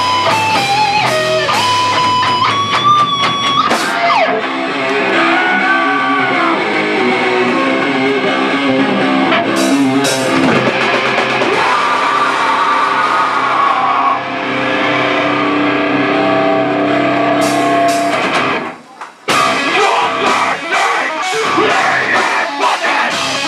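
A heavy metal band playing live: distorted electric guitars and bass over a drum kit, with a guitar line stepping through notes in the first few seconds. The band breaks off for a moment about three seconds before the end, then crashes back in.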